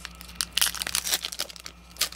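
Foil trading-card booster pack wrapper crinkling and tearing as it is opened: a dense run of crackles, busiest in the first second.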